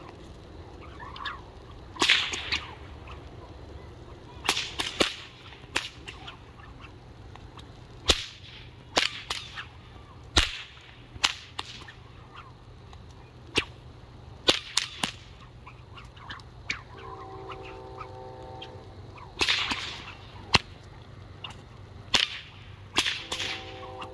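An 8 ft rubber martial arts whip, its end plaited in pleather, being cracked over and over at an irregular pace: many sharp cracks, some in quick pairs and triplets, a few with a short swish before them. A steady pitched tone sounds in the background for about two seconds past the middle, and again near the end.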